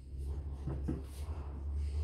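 A nutcracker figure being handled and set on a table, giving two faint light knocks about two thirds of a second apart, over a steady low rumble.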